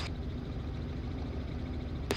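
Robinson R44 helicopter in cruise flight: the steady low drone of its engine and rotors, with a faint hiss over it.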